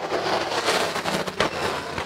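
Stock cars racing past close by, their engines loud with a rough, crackling sound and a sharp crack about one and a half seconds in.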